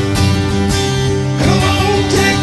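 Acoustic guitar strumming chords in a live instrumental passage, with three full strums about 0.6 s apart and the chords ringing on between them.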